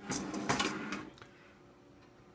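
A benchtop nuclear scaler's case sliding and scraping on a wooden desk as it is turned around by hand, with a few knocks, for about a second, then it goes still.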